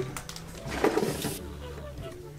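Adhesive tape being peeled off an Apple Watch's display connectors with tweezers: a short rasp of under a second near the middle, with a few small clicks.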